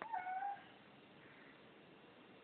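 A cat's single short meow, about half a second long, right at the start.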